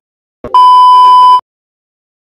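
A short click followed by a single loud, steady bleep of just under a second that cuts off sharply: a censor-bleep sound effect.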